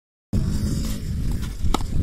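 Wind noise on the microphone, heavy in the low end, with one sharp crack near the end as a cricket bat strikes the ball.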